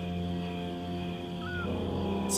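Background music score: sustained low held notes that shift up to a new chord about two-thirds of the way through, with a small high chirp just before.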